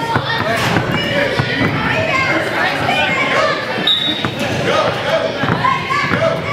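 A basketball being dribbled, bouncing on a gym floor, amid the overlapping chatter of many voices echoing in a large gym hall.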